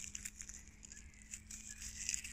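Faint rustling and a few light clicks of hands handling a small plant shoot and a pocket knife close to the microphone.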